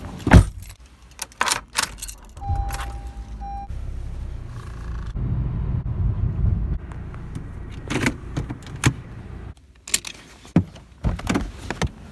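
Things being handled and rummaged through in a car's door pocket and glovebox: clicks, knocks and rattles. A short electronic beep comes about two and a half seconds in, and the car's low rumble runs through the middle.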